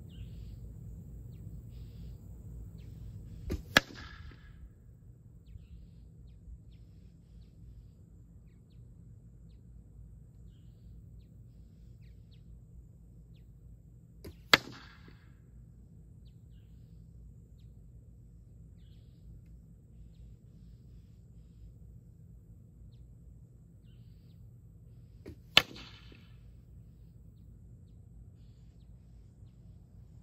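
Three arrows striking a wooden board target, about ten seconds apart. Each hit is a single sharp crack with a short ringing buzz after it.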